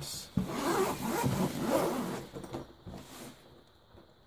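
Zipper of a hard-shell headphone carrying case being pulled open around the case for about two seconds, followed by a few light handling clicks.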